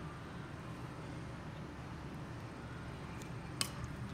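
Quiet room hum with faint handling of Kevlar rope fibres, and one sharp click about three and a half seconds in.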